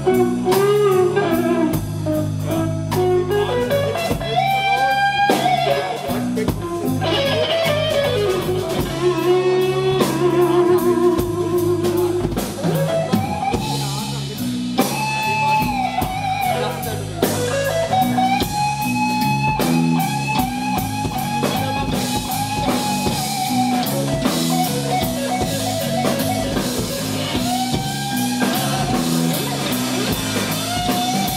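Live electric guitar solo over bass and drums in a slow blues-soul song. The guitar plays bent notes and long sustained notes that slide up and down in pitch.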